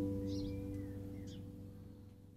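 The final chord of an acoustic guitar and double bass ringing out and fading away. A few faint bird chirps sound above it.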